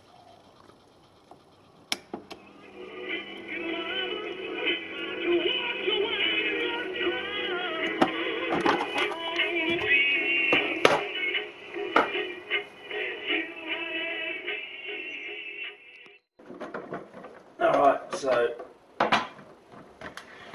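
A 1966 AIWA TP-712 reel-to-reel playing back a tape through its small built-in speaker: thin, narrow-range music with singing. It starts after a click about two seconds in and cuts off suddenly near the end.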